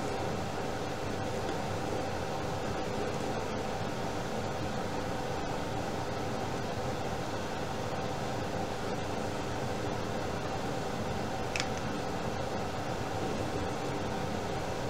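Steady mechanical room hum with an even hiss, unchanging throughout, with no distinct knocks or other events standing out.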